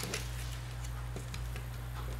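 A few faint clicks from the plastic parts of a radio-controlled car chassis being handled, over a steady low hum.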